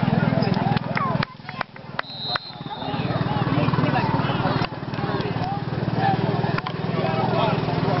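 Indistinct overlapping chatter of sideline spectators over a steady low rumble, with the level dipping briefly a few times.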